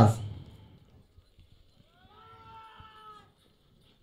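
A faint, high-pitched, drawn-out call about two seconds in, rising slightly and then held for about a second.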